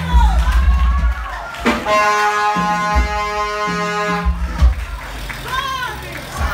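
Church keyboard music: deep bass notes with a long held chord from about two seconds in to about four and a half seconds in, and a voice near the start and end.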